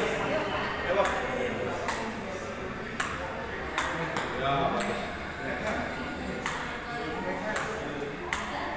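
Table tennis ball tapped up and down on a paddle: sharp, bright pings at an uneven pace of about one a second, coming quicker in the middle.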